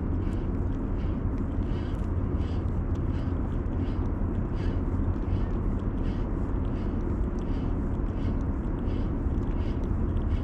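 Steady low rumble of distant harbour and traffic noise, with small waves lapping among the shoreline rocks in soft, repeated splashes.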